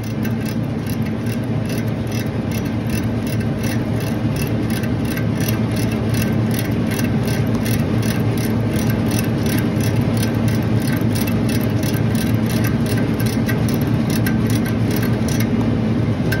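Ratchet service wrench clicking rapidly and evenly as it turns a king valve stem inward, over a steady machinery hum. The clicking stops shortly before the end, as the stem bottoms out and the valve is fully closed.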